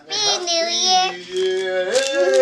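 A young child's voice drawing a word out in a singsong way, the pitch held and gliding for over a second.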